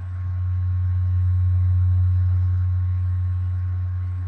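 A steady low hum that swells a little and then eases off, with a faint thin high tone running under it.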